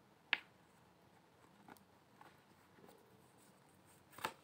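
A deck of tarot cards knocked once on the table to square it, a single sharp click about a third of a second in, followed by a few faint ticks of the cards being handled.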